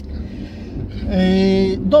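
Low, steady rumble inside a car cabin. About a second in, a man's voice holds one flat vowel for most of a second.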